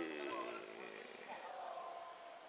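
The tail of a man's long, drawn-out shout, falling in pitch and fading away within the first half-second. Then only faint voices in the distance.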